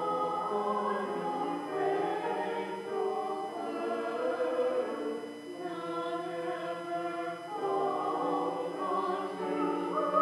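A small church choir singing in sustained sung lines, with a short break between phrases about five and a half seconds in.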